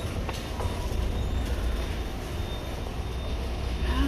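Escalator running: a steady low mechanical rumble and hum, with a few faint clicks in the first second.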